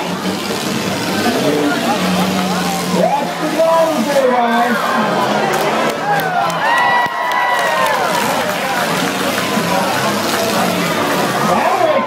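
Demolition derby compact cars' engines revving and running on the dirt arena, mixed with the voices and shouts of spectators in the grandstand.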